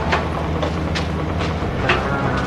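A vehicle engine running steadily, with a string of sharp knocks about every half second from a street scuffle.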